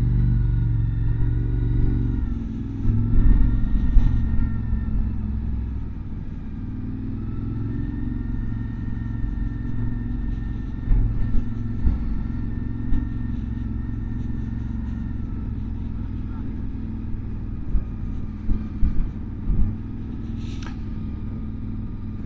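Motorcycle engine running at low speed in town traffic, with rumble on the microphone. The engine note rises and falls gently with the throttle, and a few short knocks come through.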